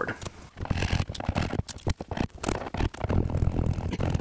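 Metal scraper blade scraping stuck-on tape residue off a plywood board, in many quick, irregular strokes.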